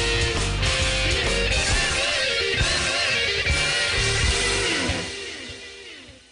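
Background music with electric guitar, fading out near the end.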